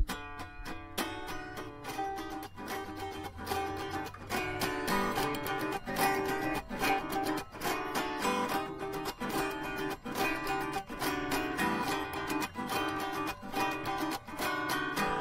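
Acoustic guitar playing a song's instrumental intro, notes plucked and strummed in a steady rhythm, starting abruptly at the outset.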